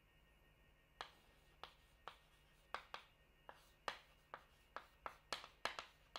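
Chalk writing on a blackboard: a run of short, sharp taps and scratches, irregular and about two or three a second, starting about a second in.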